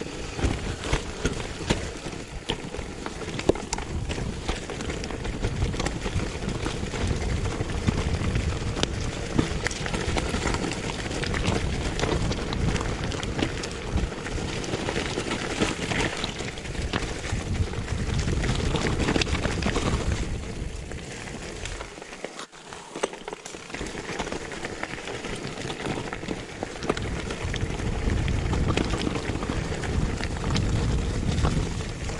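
Mountain bike riding down a rocky forest singletrack: tyres rolling and crunching over dirt, leaves and loose stones, with frequent rattles and knocks from the bike and a low rumble of wind noise. It goes briefly quieter about two-thirds of the way through.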